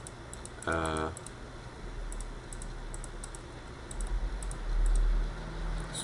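Light, scattered clicking of a computer keyboard and mouse, with a short hum of voice about a second in. A low rumble swells near the end.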